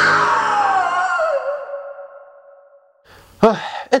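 A high, drawn-out cry slides down in pitch and fades away over about three seconds, over the end of dramatic music.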